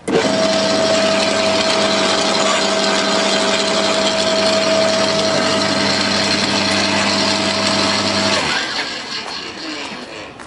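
Makita UD2500 electric garden shredder switched on: its motor starts suddenly and runs at a steady pitch with a gear whine. It is switched off about eight and a half seconds in and winds down.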